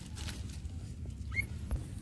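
A single short, rising squeak from a young animal at play, about one and a half seconds in, over a steady low rumble.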